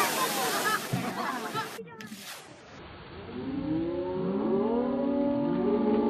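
A humpback whale crashing back into the sea with a big splash, the water rushing and spraying while excited people on the boat shriek. After a sudden cut about two seconds in and a short lull, more voices come in, rising and falling.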